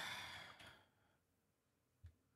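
A man's sigh, one breathy exhale of about a second, in frustration at a test that still fails. A single soft click follows at the very end.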